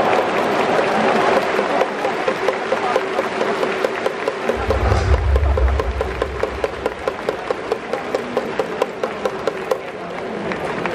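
Baseball stadium crowd clapping together in a steady, even rhythm over general crowd noise. A low rumble comes in for about two seconds midway.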